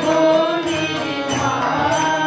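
Devotional kirtan: a woman singing into a microphone over a sustained harmonium and tabla strokes.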